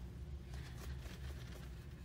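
Quiet room with a steady low hum and faint, soft scratches of a small watercolour brush working across wet paper.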